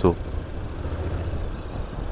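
Steady low rumble of a 2023 Honda NC750X's parallel-twin engine with road noise, heard from the rider's seat while riding.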